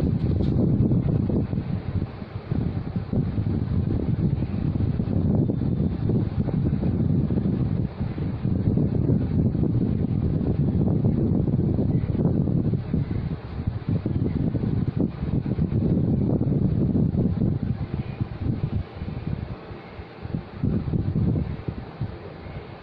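Loud, gusty low rumble of moving air buffeting the microphone, rising and falling unevenly and easing somewhat near the end.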